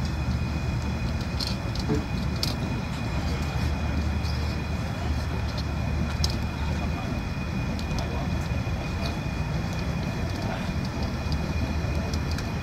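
Outdoor propane burner under a stockpot running with a steady low roar. Occasional sharp clicks come from metal tongs knocking against the pot as lobsters are moved in the boiling water.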